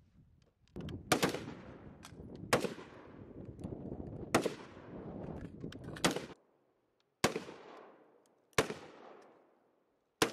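Single rifle shots on a firing range, about six loud reports one to two seconds apart with a few fainter shots between them, each followed by a long echo.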